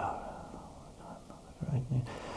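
A soft male voice: a hesitant "uh" at the start, then quiet breath and low noise, with a faint murmured sound near the end.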